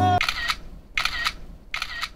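Music stops just after the start, then three short, sharp clicks come evenly spaced about 0.7 s apart.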